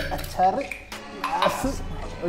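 A few light clinks and clatters of hard objects being handled, like dishware or glassware, over background music.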